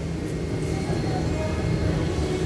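Indoor market ambience: a steady low rumble with faint, indistinct voices of other people in the background.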